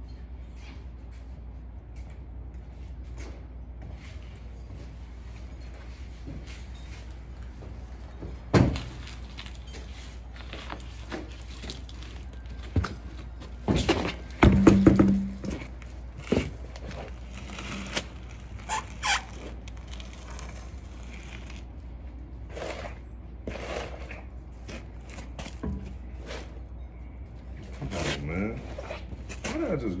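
Scattered knocks and thuds as a car wheel with its tyre is moved about and handled. One loud thud comes about eight or nine seconds in, and a cluster of louder knocks comes around fourteen to fifteen seconds.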